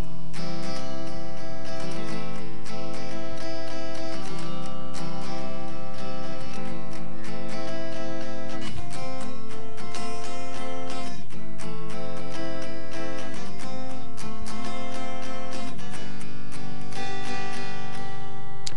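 Acoustic guitar strummed in simple open chords, a beginner playing a verse progression of C, A minor, F and G; each chord rings for a couple of seconds before the next change.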